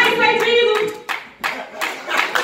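Hand clapping, a quick run of sharp claps starting about a second in, after a voice held on a sustained note for the first second.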